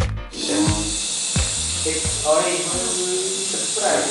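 A steady, even hiss starts suddenly just after the start and lasts about four seconds, with quiet talking underneath it.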